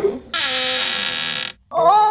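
Animated-film soundtrack: a short gulp, then a steady held musical note of about a second that cuts off. Near the end a woman's drawn-out, wavering yawn begins.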